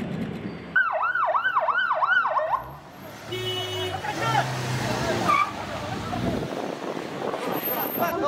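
Ambulance siren in a fast yelp, about three rising and falling sweeps a second, starting suddenly about a second in and stopping after a couple of seconds. A short steady horn-like tone follows, then shouting voices and vehicle noise.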